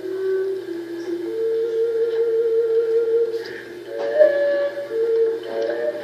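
Fujara, the tall Slovak shepherd's overtone flute, playing a slow folk melody of long held notes, heard from an old video recording through a TV speaker.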